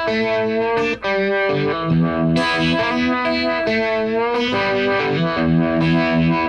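Electric guitar with a Uni-Vibe and an Octavia pedal on, playing a blues-rock riff off the E minor pentatonic scale: ringing sustained notes and double-stops that change every half second or so, with a brief break about a second in.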